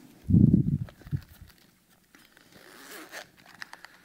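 A heavy low thump with some rustling, then a zipper being drawn open on a hard-shell sunglasses case, a rasp lasting about a second near the end, followed by a few small clicks.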